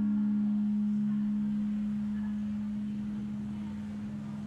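Martin DCME acoustic guitar letting its last strummed chord ring out, the higher strings fading first so that one low note is left sounding, slowly dying away.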